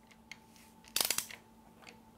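A quick run of faint metallic clicks from a ratchet-head torque wrench about a second in, as a camshaft sprocket bolt is tightened to 60 Nm.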